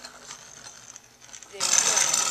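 Two metal-wheeled Beyblade tops spinning in a plastic stadium, faint at first; about one and a half seconds in, a sudden loud, fast rattle of clicks starts as the tops clash together.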